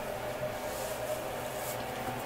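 Steady low hiss of room noise, with a faint soft brushing near the end as a terry towel is wiped across freshly shaved skin.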